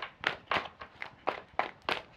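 Tarot cards being handled: a run of short, soft card slaps, about three or four a second and slightly uneven.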